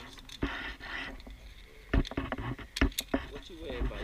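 Sharp metal clicks and clanks of a zipline pulley trolley and carabiners being handled and clipped onto the steel cable, a few separate clicks about two and three seconds in.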